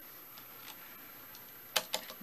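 A diecast model car handled on a wooden tabletop: a few faint ticks, then two sharp clicks close together near the end as the car is turned and set down.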